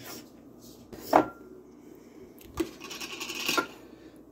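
Kitchenware being handled on a counter: one sharp clink about a second in, then about a second of rasping rubbing near the end, as a glass canning jar is picked up and opened and a ceramic bowl and spoon are set out.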